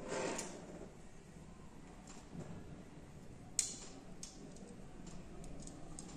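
Faint clicks and taps of a fretsaw's metal frame and blade being handled and fastened on a table, with one sharper click about three and a half seconds in.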